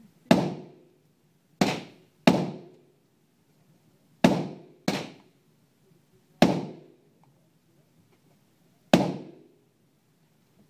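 Seven AR-15 rifle shots fired one at a time at an uneven pace, each with a short echo off the indoor range.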